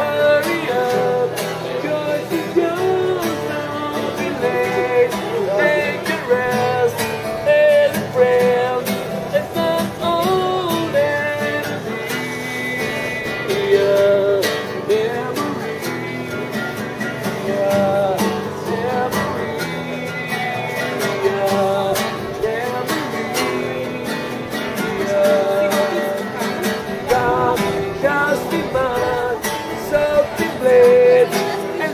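Music with guitar and a singing voice, playing steadily throughout.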